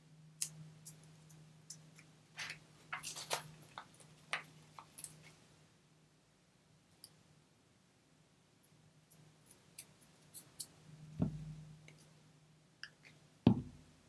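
Faint clicks and rustles of small paper cut-outs being handled and pressed onto a cardstock embellishment on a cutting mat, then two soft thumps near the end, over a faint steady hum.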